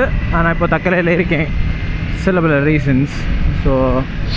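A man talking in bursts while riding a motorcycle, over a steady rush of wind and the low drone of the bike's engine.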